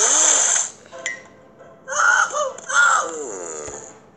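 A cartoon man's wild, strained yells and groans. There is one long outburst at the start, two shorter ones in the middle, and the last trails down in pitch.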